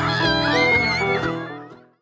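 Live band with electric guitar, acoustic guitar and upright bass playing a country-style tune, with a high note gliding up and held; the music fades out over the last half-second.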